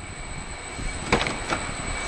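The rear door of a 2008 Jeep Wrangler Unlimited unlatched and swung open, with a couple of short latch clicks about a second in, over low rumbling handling noise.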